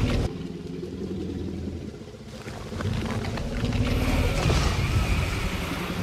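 Low, rumbling dinosaur growl sound effect that grows louder and harsher about halfway through.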